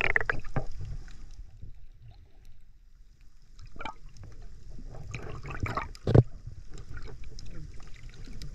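Muffled underwater water sounds from a snorkeler swimming with fins, heard through a submerged action camera: irregular bursts of sloshing and bubbling over a steady low rumble, with a sharp thump about six seconds in.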